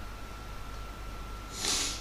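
A short, sharp breath close to the microphone near the end, over a faint steady background hum.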